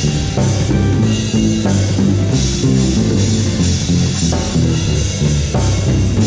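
Band music: a six-string electric bass plays a moving line of low notes over keyboard chords and a drum kit groove.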